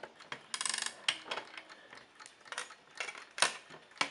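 Winding key turning the spring arbor of a ca. 1900 Junghans music-box alarm clock, the ratchet clicking as the spring is wound. The clicks come as a quick run about half a second in, then a few single clicks spread over the rest.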